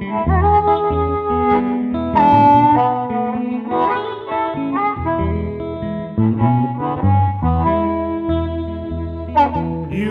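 Blues instrumental break: a harmonica playing a melody with bent notes over guitar accompaniment.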